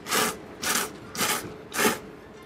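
A man slurping thick abura soba noodles with chopsticks: four loud slurps, about half a second apart.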